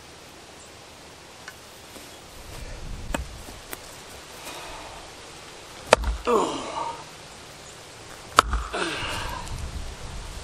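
A heavy splitting axe with a roughly five-pound wedge-profile head strikes a round of red oak twice, with sharp thwacks about six and eight and a half seconds in. Each strike is followed by a falling grunt from the man swinging it.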